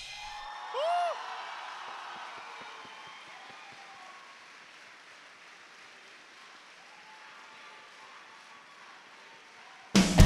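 A break in the swing dance music: a faint murmur of a large crowd in a big hall, with one short tone that rises and falls about a second in. The music cuts back in loudly right at the end.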